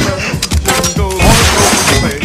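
Metal armor pieces crashing and clattering with several sharp impacts, over music.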